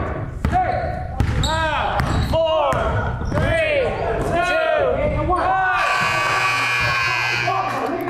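Basketball in play on a gym court: the ball bouncing and sneakers squeaking on the floor, echoing in the hall, amid voices. A longer rush of noise comes about six seconds in.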